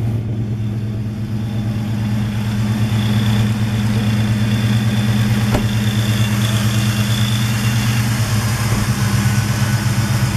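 Oldsmobile 425 Super Rocket V8 with factory dual exhaust idling steadily and evenly, with one brief click about halfway through.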